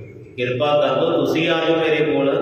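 A man's voice reciting in a chant-like delivery through a microphone, resuming about half a second in after a short pause.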